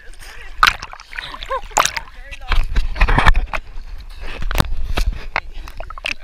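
Lake water sloshing and splashing around a camera held at the surface by a swimmer, with repeated sharp splashes and a heavy low rumble in the middle as water washes over the housing.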